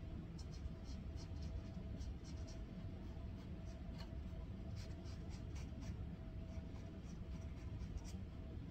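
A paintbrush working on a stretched canvas: short, quick scratchy strokes in small clusters, over a steady low background hum.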